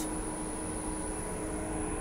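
Steady hum of a superyacht's onboard machinery and air-handling system, an even rush of noise with a constant tone running through it.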